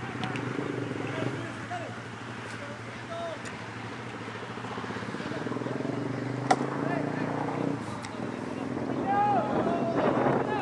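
Players' and onlookers' distant shouts across a football pitch, louder near the end, over a steady low engine-like hum. One sharp knock about six and a half seconds in.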